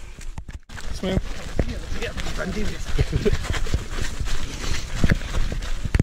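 Footfalls of several runners jogging on a dirt path, a steady patter of steps, with people talking over them.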